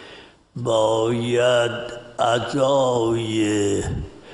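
An elderly man speaking Persian in a slow, drawn-out, chant-like voice with long held vowels: two phrases after a short pause.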